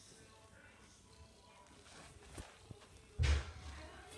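Quiet room with two faint clicks, then a short, louder thud and rustle about three seconds in, as of a phone being handled and moved.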